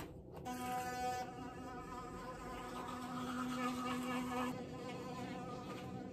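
Electric sonic toothbrush running with a steady buzz. Its tone dulls a little about a second in, and it switches off about four and a half seconds in.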